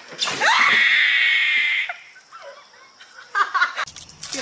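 A girl screams, high-pitched and held for about a second and a half after a quick rise in pitch, as a bucket of ice water is dumped over her.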